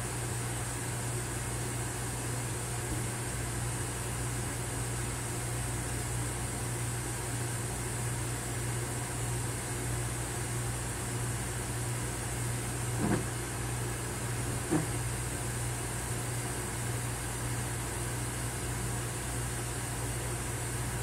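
Steady low hum and hiss of a Metro-North Comet II rail car heard inside its restroom, with two short knocks about two-thirds of the way through, a second and a half apart.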